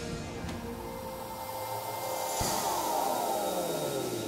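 Background music tailing off, then about two and a half seconds in a low hit starts a logo sound effect, several tones sliding slowly down in pitch together.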